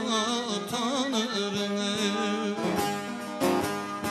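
A man singing a Turkish folk song (türkü) in an ornamented, wavering line, accompanied by his own bağlama (long-necked saz) strummed with quick strokes.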